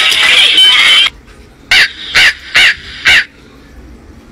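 Background music cuts off about a second in, followed by four short crow caws about half a second apart, each rising and falling in pitch: the crow-caw sound effect dubbed into comedy clips to mark an awkward moment.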